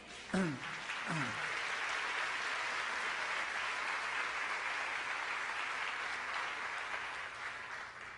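An audience applauding, a steady round of clapping that tapers off slightly near the end.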